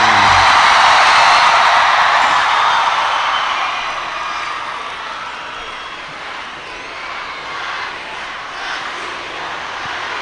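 Huge open-air concert crowd cheering and screaming as a song ends, loudest at first and dying down after a few seconds into a steady crowd din.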